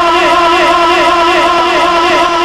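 A man's voice holding one long, sustained sung note with a wavering vibrato, the chanted, drawn-out delivery of a sermon.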